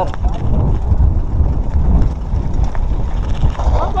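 Wind buffeting the microphone of a camera on a mountain bike, a loud uneven low rumble, with tyre noise and the odd knock as the bike rolls over a rough dirt track.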